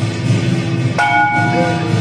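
Loud continuous music, with a single metal bell strike about halfway through that rings with a few clear tones for under a second.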